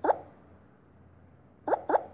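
Short pitched "plop" sound effects from a colouring app: one at the start and two in quick succession near the end, marking taps as colours are picked and filled in.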